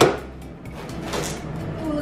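Rolling pizza-cutter wheel crunching through the baked crust of a pizza in a cardboard box, a quiet scraping crunch with a few crackles.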